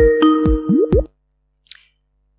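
Electronic call ringing tone: bubbly, plopping notes over a held two-note chord, repeating, that cuts off suddenly about a second in as the call connects.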